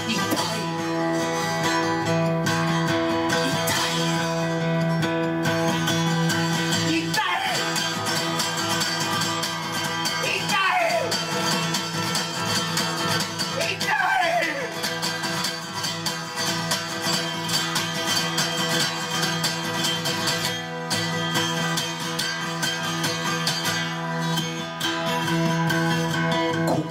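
Takamine cutaway acoustic guitar strummed fast and steadily through an instrumental break of a live song. A few wordless falling cries from the singer come in about ten and fourteen seconds in.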